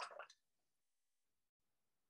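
Near silence: room tone, after a spoken word trails off at the very start.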